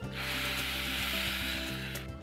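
Coconut milk poured in a thick stream into a clay pot of spiced baby jackfruit pieces: a steady hiss that starts just after the beginning and stops just before the end.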